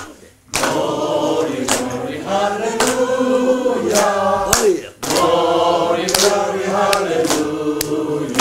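A group of voices singing a slow song together. The singing starts about half a second in and breaks off briefly about halfway through.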